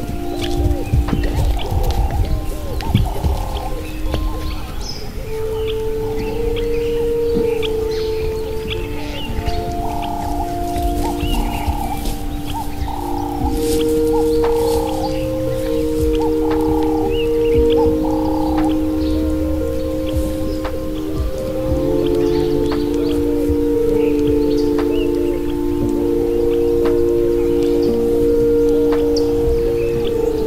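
Slow ambient meditation music of long, overlapping held tones that shift every few seconds, with short bird chirps scattered over it.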